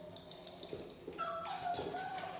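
A doodle puppy whimpering softly, with a short, slightly falling whine in the second second.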